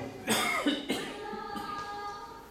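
A person coughing twice, the first cough about a third of a second in and a shorter one about half a second later.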